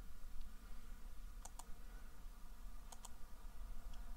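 Two double clicks of a computer mouse, about a second and a half apart, over a low steady room hum.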